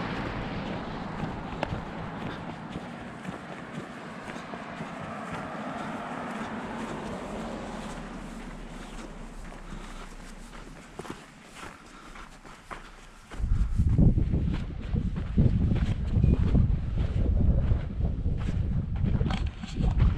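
Footsteps on a sandy dirt trail, with a steady road hiss that fades away over the first half. About two-thirds in, wind starts buffeting the microphone with a loud, gusty low rumble.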